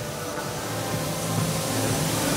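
Steady mechanical hum and hiss of an olive oil bottling line's machinery, growing slightly louder.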